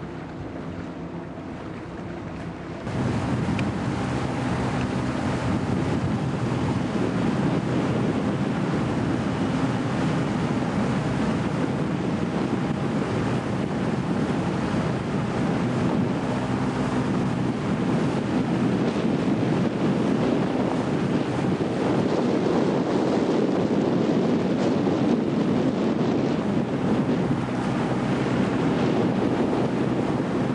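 Wind on the microphone and water rushing along the hull of an E scow under sail, a steady rushing noise that grows suddenly louder about three seconds in.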